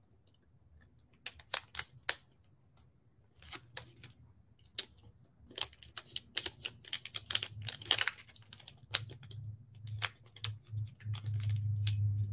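Transfer tape being peeled slowly off vinyl lettering on a small wooden sign while fingers press the letters down: irregular small clicks and crackles, sparse at first and coming thicker in the second half.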